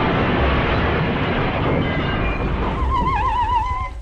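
Radio-drama sound effect of a car crash: a loud, dense burst of crashing noise lasting about two and a half seconds, then a wavering high tone near the end.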